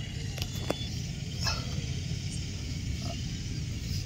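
Steady low rumble of open-air background with a few faint clicks. No drone motor is running yet.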